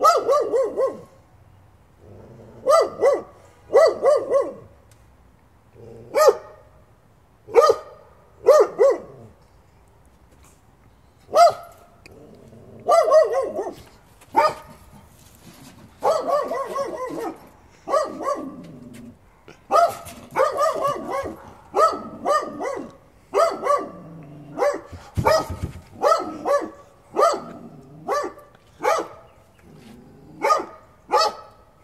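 A dog barking over and over, in single barks and quick runs of two or three. There is a short lull about ten seconds in, and the barks come closer together in the second half.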